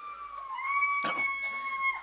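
A person's long, high-pitched scream, held on one note, dipping slightly about half a second in and then holding steady until it stops. It is one of the screams of people in the congregation reacting during deliverance prayer.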